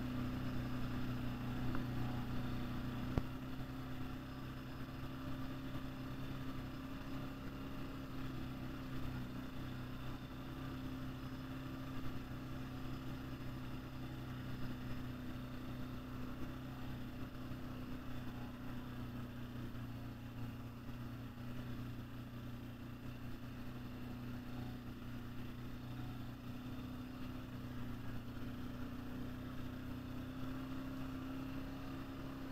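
ATV engine running steadily at low speed, an even hum from the machine carrying the camera, with one sharp knock about three seconds in.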